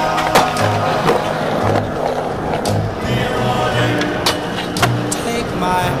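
Skateboard on a concrete skatepark: wheels rolling with several sharp clacks of the board hitting and landing, mixed with a song that has a steady bass line.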